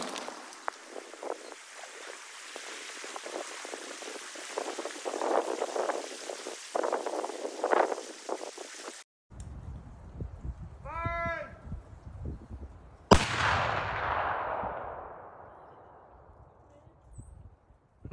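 Scattered patters and splashes as debris and water fall back after a Tannerite blast. Later comes one sharp rifle shot, the loudest sound, whose report echoes away over about four seconds. The shot misses, so the Tannerite does not go off.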